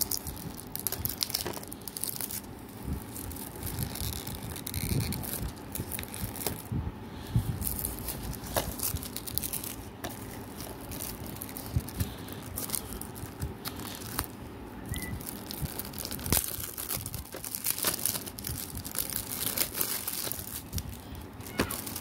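Clear plastic shrink-wrap being torn and peeled off a DVD case by hand, crinkling and crackling irregularly with scattered sharp clicks.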